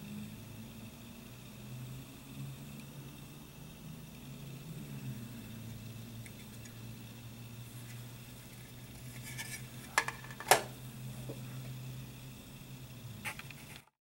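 Styrene plastic model kit parts being handled, with two sharp clicks about ten seconds in and another near the end, over a steady low hum.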